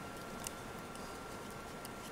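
Quiet room tone with a faint steady high whine, and two soft clicks from a small plastic craft piece and a paintbrush being handled, one about half a second in and one near the end.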